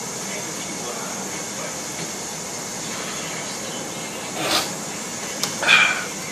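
Steady hiss of background noise, with two short breathy exhales near the end after a swig of beer from a bottle.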